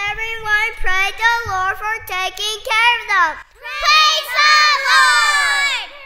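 A group of young children singing in high voices: a phrase of short held notes, a brief break about three and a half seconds in, then a longer phrase that slides down in pitch at its end.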